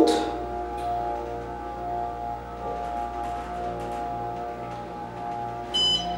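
Otis Series 5 hydraulic elevator's pump motor running with a steady whine and hum as the car rises. A short high chime sounds near the end as the car reaches the next floor.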